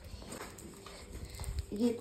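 A few light knocks and faint rustling as a gift box wrapped in shiny foil paper is handled.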